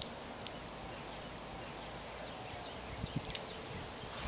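Quiet outdoor background: a steady faint hiss broken by a few short high clicks, with a few soft low thuds about three seconds in.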